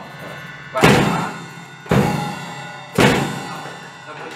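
Acoustic drum kit struck three times, about a second apart, each stroke a drum and cymbal hit together that rings out before the next.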